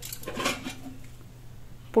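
Stainless steel dishware and pot lids clinking as they are handled, with a few sharp clinks at the start and quieter handling noise after.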